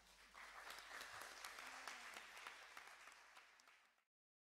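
Audience applauding, the clapping building up about half a second in and fading out near the end.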